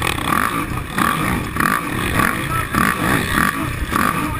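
Racing quad's engine heard from an onboard camera, its revs rising and falling over and over as the rider works the throttle on a dirt motocross track.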